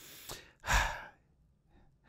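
A man draws a quick breath in close to the microphone, a little over half a second in, then near silence.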